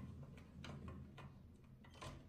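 Faint paint splattering: a scattered string of small, sharp drip-like ticks, about six in two seconds, over a low steady hum.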